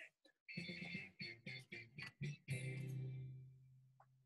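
Brief guitar music: a few strummed chords, the last one left ringing and fading out.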